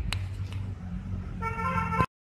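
Steady low rumble with a click just after the start, then a short vehicle horn toot, one steady tone, starting about one and a half seconds in and cut off suddenly.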